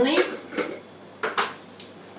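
A metal spoon clicking and tapping against a coffee grinder as seeds are spooned into it: three short, light knocks about half a second apart.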